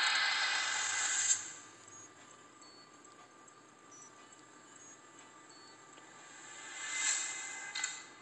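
Synthetic whooshing swells from a smartphone's small speaker as a custom boot animation plays. A rising hiss cuts off sharply about a second in; after a quiet stretch, a second swell rises and fades near the end.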